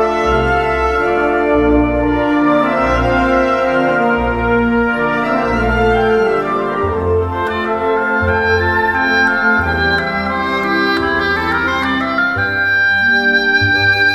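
Concert band music: brass and woodwinds holding sustained chords, with the bass line changing about halfway through.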